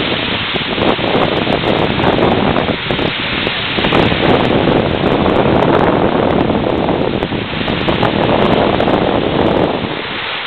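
Surf breaking on a sandy beach, with wind rumbling on the microphone: a steady rushing noise that swells for several seconds in the middle and drops back near the end.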